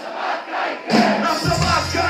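Hip-hop beat played loud through a club PA, with a crowd shouting along. The bass drops out for about the first second, then the beat kicks back in.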